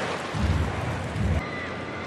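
Ballpark crowd noise, a steady wash of many distant voices, with a low rumble for about a second near the start.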